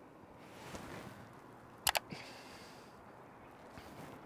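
Two sharp clicks in quick succession about two seconds in, over a faint rustle.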